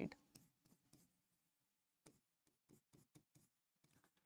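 Faint, irregular taps and strokes of a stylus writing on a digital board's screen, a few each second, close to silence.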